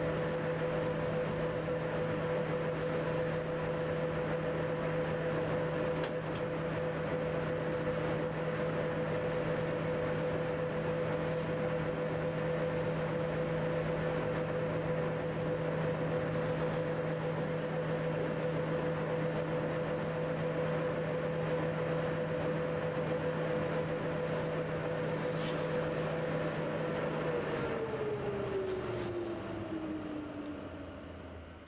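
Electric locomotive heard from inside its cab, running slowly at a steady speed with a steady whine and a low hum. Near the end the whine falls in pitch as the locomotive slows. A few brief high-pitched sounds come around the middle.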